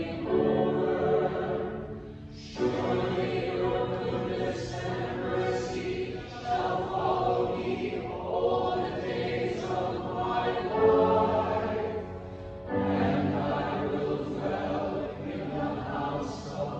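Church choir singing in phrases, with short breaks about 2 seconds in and again about 12 seconds in.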